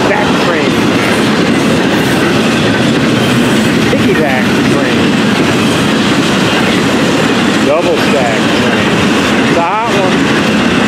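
Intermodal freight train rolling past at close range, its container well cars and trailer flatcars making a loud, steady rumble with wheel clatter on the rails.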